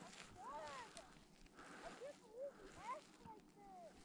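Near silence on the slope, with a faint, far-off voice calling out in several short rising-and-falling cries.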